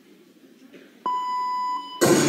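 A single electronic beep over the hall's sound system, a steady tone starting suddenly about a second in and lasting under a second, the start signal just before the gymnast's routine music. Before it, faint crowd murmur.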